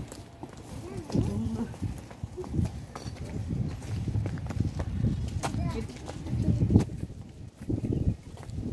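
Indistinct voices, short and unclear, over irregular low thumps.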